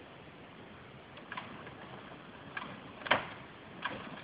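A few faint, scattered sharp cracks, irregularly spaced, the loudest about three seconds in: the strained wood of a tree being pulled over with a rope, starting to give just before it falls.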